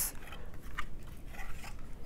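Faint handling noise: light scrapes and rustles of hands gripping and moving a rugged tablet computer.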